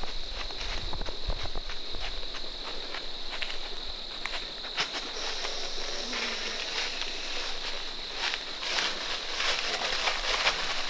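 Whitetail deer stepping through dry leaf litter: irregular crunching steps and rustles, with a steady high-pitched whine underneath.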